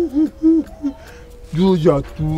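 A man's teasing hooting vocal sounds, a held 'hoo' breaking off into three short hoots, followed near the end by a brief lower-pitched vocal sound.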